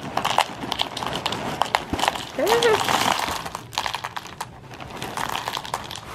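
Post Honeycomb cereal pouring from its box into a bowl: a rapid, uneven patter of light pieces clicking and rattling against the bowl and one another, with a brief voiced sound near the middle.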